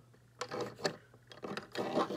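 Handling noise from a diecast metal toy tow truck being turned by hand on its display stand: a few light, irregular clicks about half a second in, and a short rub near the end.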